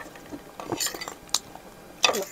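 Metal forks clinking and scraping against ceramic bowls while noodles are eaten: a few light, separate clinks, the sharpest a little over a second in.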